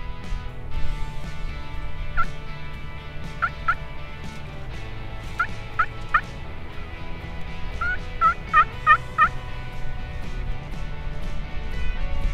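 Turkey yelping: short single and paired yelps, then a quicker run of about five yelps near the end.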